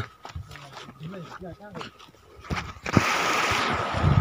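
Faint distant voices and a few clicks, then, about three seconds in, the steady rush of a shallow mountain stream flowing over stones.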